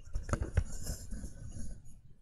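A headset microphone being taken off: rustling and rubbing against the mic, with a few sharp knocks about a third to half a second in.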